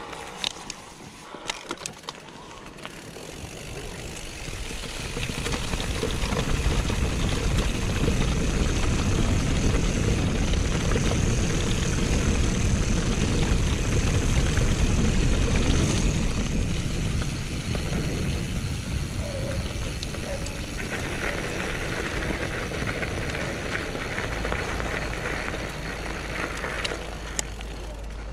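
Wind buffeting the action camera's microphone with the rumble of mountain bike tyres rolling downhill over grass. It builds up with speed, is loudest in the middle stretch and then eases off. A few sharp clicks come near the start.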